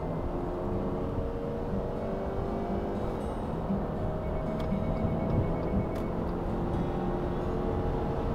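Subaru Forester hybrid's 150 hp boxer petrol engine at full throttle, held at a steady high pitch by its Lineartronic continuously variable transmission, heard inside the cabin. This constant high-rev drone is the noise typical of the CVT at maximum revs, and a good deal of it gets into the cabin.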